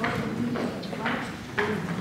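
A few separate knocks and taps on a stage as microphone stands are handled and adjusted, over faint voices in the hall.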